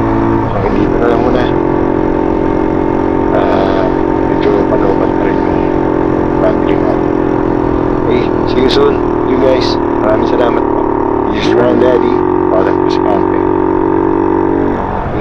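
A vehicle engine running steadily with a droning hum that shifts in pitch about half a second in and again near the end. A voice talks at times over it.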